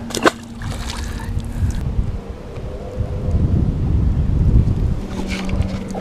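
Wind buffeting the microphone, an uneven low rumble, with one brief sharp sound just after the start and a faint steady low hum at times.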